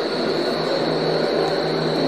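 Steady engine-like hum and hiss of outdoor street background noise, with a faint high whine held throughout.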